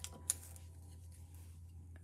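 A single light click about a third of a second in, with a few fainter ticks, over a faint steady low hum: small art supplies being handled on the tabletop.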